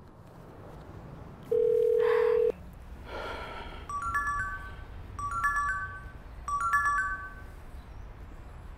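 Phone call tones: a loud, steady ringback tone sounds for about a second while the call goes through. Then a smartphone ringtone plays a short phrase of bright chime-like notes three times over as the call comes in.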